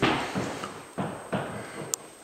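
A few irregular knocks and thuds, about four, each ringing on in a bare drywalled room, then a sharp click near the end.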